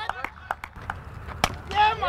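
Sharp crack of a cricket bat striking the ball about one and a half seconds in, with a few fainter knocks and voices in the background.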